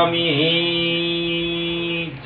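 A man's voice holding one long chanted note of a Sanskrit mantra, steady in pitch apart from a short dip just after the start.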